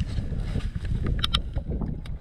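Wind rumbling on the microphone and knocking from the canoe's hull, with two sharp clicks a little over a second in.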